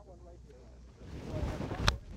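A TaylorMade Milled Grind 2 wedge striking a golf ball: a single sharp, crisp click near the end. It comes after a swell of rushing, wind-like noise.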